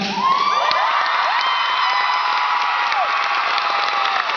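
Theatre audience cheering and clapping as a song ends, with many high-pitched screams and whoops gliding up and down over the applause.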